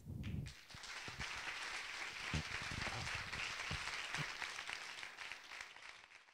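Audience applauding: steady clapping that fades away near the end.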